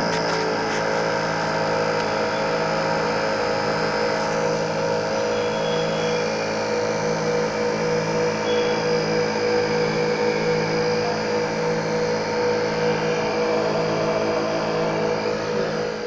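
NeoDen4 desktop pick-and-place machine running: a steady motor and fan hum with several fixed tones, and a low tone that swells and fades about once a second.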